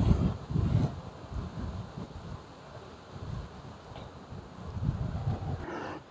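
Wind buffeting the microphone in uneven low gusts, strongest in the first second, then weaker.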